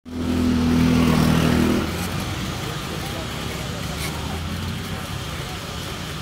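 A motor vehicle engine running steadily close by amid street noise, louder for the first two seconds, then quieter.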